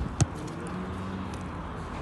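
A football kicked once: a single sharp thud about a quarter of a second in.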